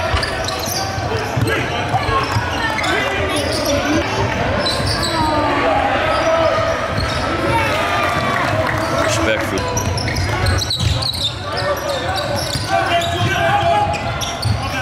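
Live basketball game sound in a large indoor hall: the ball bouncing on the court, with a continuous mix of players' and spectators' voices.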